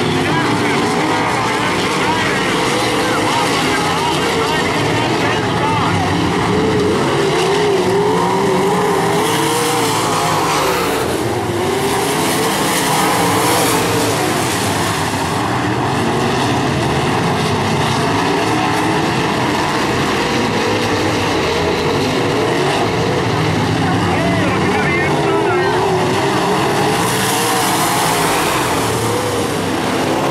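A pack of IMCA Modified dirt-track race cars running laps with their V8 engines at full race pace. Several engines rise and fall in pitch at once as the cars go into and out of the turns, with a constant engine drone throughout.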